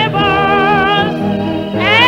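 A solo voice singing with wide, even vibrato over instrumental accompaniment of held bass notes. Near the end the voice slides up into a new note.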